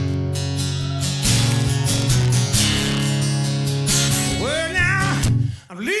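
Steel-string acoustic guitar strummed in a driving blues rhythm, with low bass notes repeating under the chords. The playing dips briefly just before the end.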